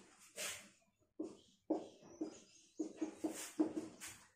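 Marker pen squeaking on a whiteboard while words are written: a string of short, faint squeaks, one per stroke.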